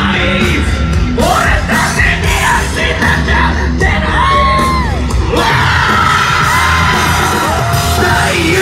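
Loud live hip-hop concert sound from within the crowd: a rapper's amplified vocals shouted over a bass-heavy backing track, with yells from the audience.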